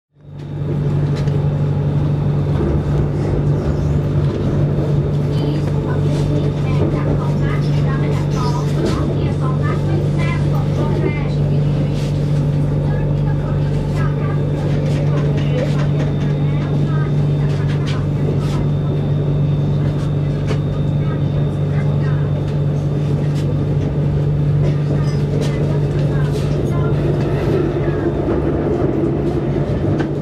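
Inside a BTS Skytrain car running along the elevated track: a steady low hum with running and track noise throughout, fading in at the very start, and people's voices talking at times.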